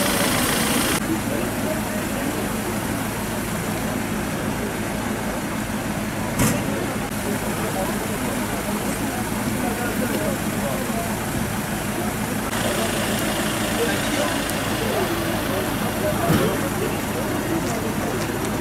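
A vehicle engine idling steadily, with people's voices in the background and two short sharp knocks, one about six seconds in and one near the end.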